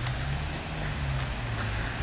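Low, steady rumble of city street traffic, with a car engine's slightly wavering drone.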